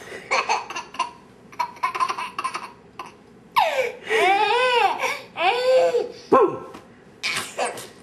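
A toddler laughing in a string of short bursts, with a longer pitched laugh that rises and falls about halfway through.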